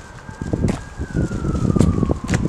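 A distant siren sounding one slow wail that rises and then falls in pitch. Beneath it are footsteps on pavement and uneven rumbles of wind on the microphone.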